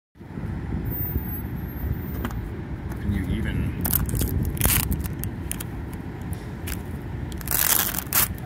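A paper sticker being scraped and torn off a metal utility box by hand, with a few short ripping scrapes around the middle and a longer one near the end, over a steady low rumble.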